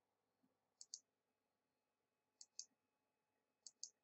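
Three faint computer mouse clicks about a second and a half apart, each heard as two quick ticks, as the debugger's step button is pressed again and again. Otherwise near silence.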